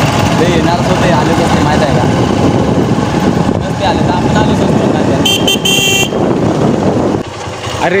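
Motorcycle riding noise, mostly wind buffeting the microphone with engine and road noise under it. A vehicle horn sounds in a few short toots about five seconds in. The noise drops away after seven seconds.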